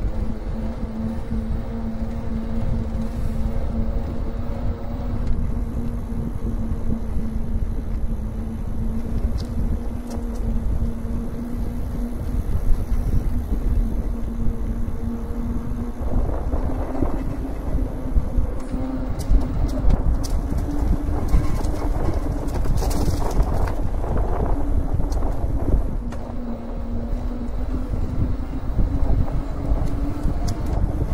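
Electric mountain bike's motor whining steadily under pedal assist, over a constant rumble of tyres and wind on the microphone. About halfway through the whine rises a little in pitch and the rolling noise turns rougher for several seconds.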